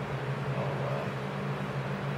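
Handheld heat gun running steadily, a low hum under an even airy hiss, blowing on a freshly painted gauntlet.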